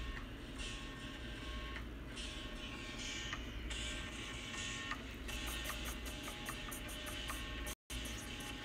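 Quiet music and short beeps from a mobile game over a steady low hum. From about five seconds in, a fast, even ticking beat joins in. The audio cuts out for a moment just before the end.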